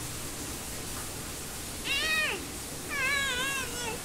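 Two high-pitched, meow-like calls about a second apart: the first short, rising then falling, the second longer and wavering.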